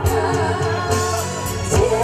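A trot song sung live over an amplified backing track: one voice holding a wavering melody line above a steady drum beat with cymbal hits.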